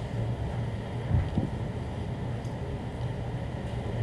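Steady low hum of room noise with one soft thump about a second in, from a handheld microphone being handled as it is passed to the next speaker.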